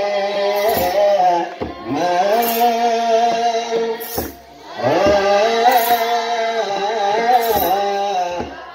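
A children's choir chanting Ethiopian Orthodox wereb in unison, in long sung phrases with a short break about four seconds in. A bright metallic jingle recurs about every second and a half from shaken sistra (tsenatsel).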